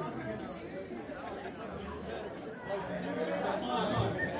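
Indistinct chatter of several people talking at once, with no music playing.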